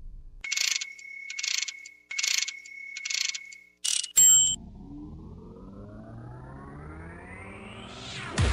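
Electronic music track for a robot-themed dance routine: four short buzzy electronic beeps over a steady high tone, a sharp loud hit about four seconds in, then a long rising synthesizer sweep that builds toward the next section.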